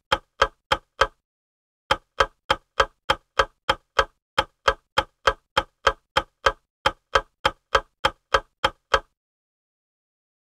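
Clock-ticking sound effect for a quiz countdown timer, about three sharp ticks a second, with a short break about a second in; the ticking stops about a second before the end.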